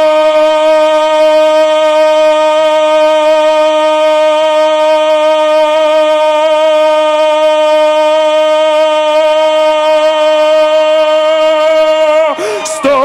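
A man's voice holding a single sung note, steady in pitch for as long as he can, in a timed note-holding contest. The note starts to waver slightly near the end.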